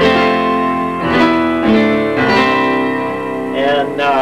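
Ensoniq SQ-2 synthesizer keyboard playing its 'Dynamic Grand' piano patch. Chords are struck three times, each ringing and fading.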